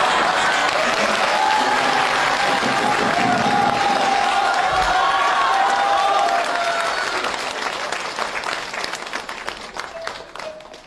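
Studio audience applauding, with some voices mixed in; the applause is loud at first and dies away over the last three seconds or so.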